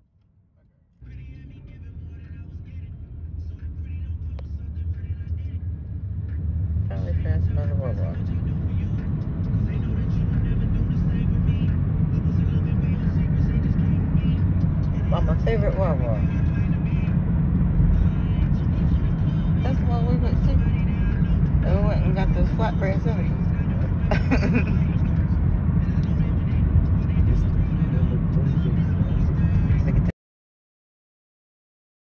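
Road and engine noise inside a moving car's cabin: a low rumble that builds over the first several seconds as the car gets going, then holds steady.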